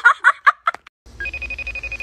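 iPhone FaceTime incoming-call ringtone: a short lower note, then one long steady high tone, starting about a second in after a woman's chanting voice cuts off.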